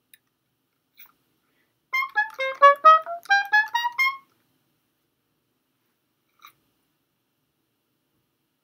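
Solo oboe playing a quick passage of short, separated notes that climbs in pitch. The run lasts about two seconds and starts about two seconds in.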